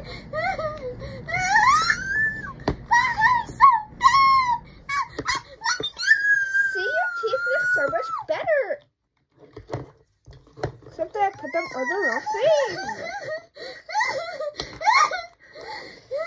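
A child's voice making high, wordless whimpering and wailing noises with sliding pitch, including one long, slowly falling wail about six seconds in. There is a short pause near the middle with a few light clicks.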